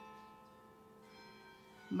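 Faint, steady ringing tones of several pitches, held through a pause in a woman's spoken reading. Her voice comes back right at the end.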